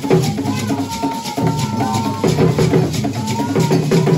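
Brekete drum ensemble playing a fast, steady percussion rhythm of drums and struck sticks, with a voice singing a long held line over it from about half a second in until about two and a half seconds.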